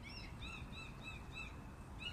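A small bird calling faintly: a run of short, arched chirps, about three a second, over low outdoor background noise.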